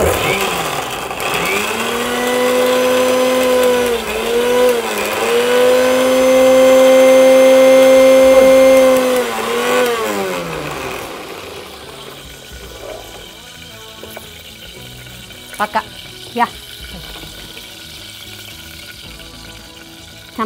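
Electric mixer grinder (mixie) running for about nine seconds with a steady motor whine that dips briefly twice in the middle, then winds down as it is switched off.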